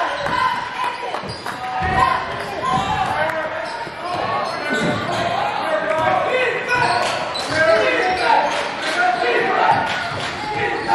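Basketball dribbled on a hardwood gym floor, with players' voices calling out across the court, all echoing in a large gym.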